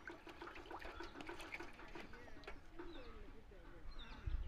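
Faint water splashing and sloshing in a plastic tub as a small child paddles with its hands, with short quick splashes throughout. Birds call in the background.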